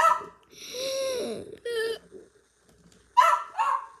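Pet dog vocalizing: a sharp bark at the start, then a longer call rising and falling in pitch about half a second in, and a short one near two seconds.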